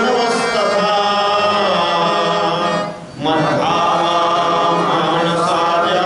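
A man chanting a devotional verse in a slow, held sung melody, accompanied by a harmonium. The sound dips briefly about three seconds in, then the chant resumes.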